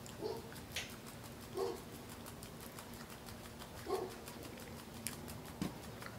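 A dog barking three times in short single barks spread over about four seconds, heard faintly, with light clicks from someone eating.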